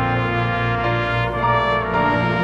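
Live pit orchestra playing the musical's score, the brass section leading with held chords that shift every half second or so.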